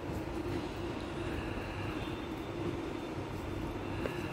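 Steady background hum with a low rumble and an even hiss, unchanging throughout, like a room appliance running.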